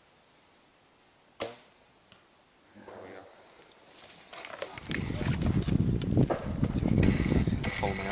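A Korean traditional bow shot once, about a second and a half in: a single sharp snap of the string on release. From about four and a half seconds on, a loud rumbling noise builds and keeps going.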